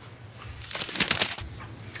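A brief burst of rustling and light clattering, lasting under a second from about half a second in: painting supplies being handled as the brush is put away and a pencil taken up.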